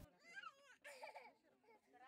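A toddler crying faintly, in several short wavering wails.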